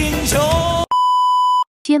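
Music with a singing voice cuts off abruptly just under a second in and is replaced by a single steady electronic beep lasting under a second. It stops dead, and a voice begins speaking right at the end.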